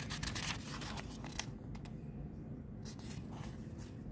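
Thin pages of a softcover Bible being flipped by thumb: soft papery rustling and quick ticks of the page edges. There is a brief quieter gap in the middle.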